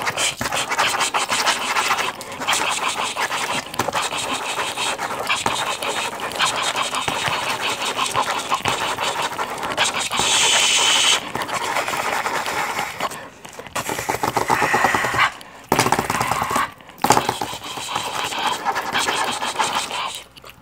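A pen scribbling fast and hard on paper: dense, rapid scratching strokes, broken by a few short pauses in the second half.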